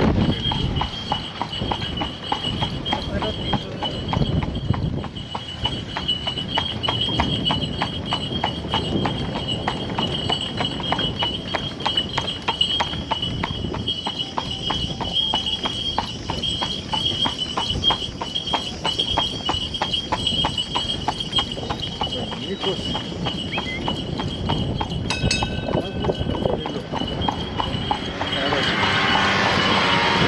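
A carriage horse's hooves clip-clopping on asphalt at a steady walking pace as it pulls a horse-drawn carriage, over a steady high-pitched tone.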